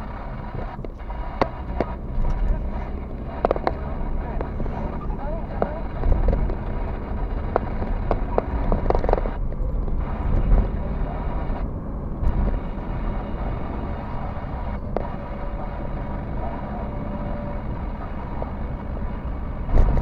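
Car interior road and engine noise recorded by a dashboard camera while driving: a steady low rumble, with scattered sharp clicks and knocks.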